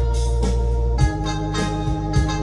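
Electronic keyboard playing sustained, organ-like chords over a drum beat, with a chord change about a second in.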